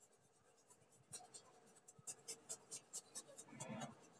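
Faint paintbrush strokes on paper: a brush dabbing lemon-yellow poster colour onto the sheet in a run of short, quick dabs that speed up in the second half.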